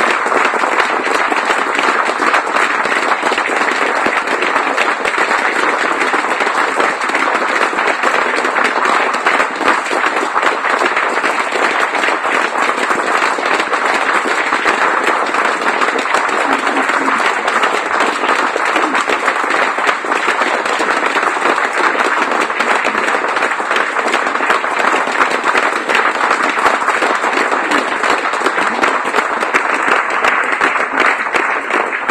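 Concert audience applauding: a dense, steady sound of many hands clapping that holds at the same level throughout.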